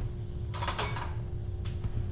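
Kitchenware handled at the counter by the dish rack: a short clatter about half a second in and a sharp click later, over a steady hum.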